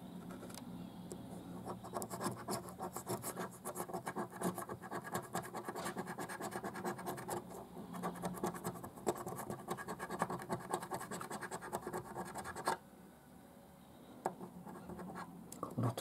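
A 50p coin scraping the latex coating off a paper scratchcard in rapid back-and-forth strokes. The scratching breaks off briefly about three-quarters of the way through, then starts again more lightly.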